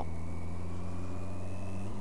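Kawasaki 1400GTR motorcycle engine running at a steady cruise, a low even hum with road and wind noise, as picked up by a camera mic on the moving bike.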